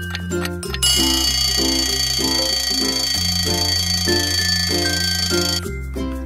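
Background music with a bass line and melody, over which a bell alarm clock sound effect rings continuously from about a second in until just before the end.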